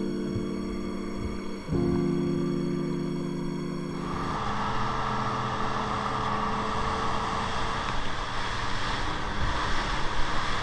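Background music with held chords for the first four seconds. Then a cut to twin Evinrude 75 outboard motors running at speed on a rigid inflatable boat: a steady engine hum under a loud rush of wind and water.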